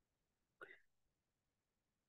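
Near silence: room tone, with one brief faint sound a little over half a second in.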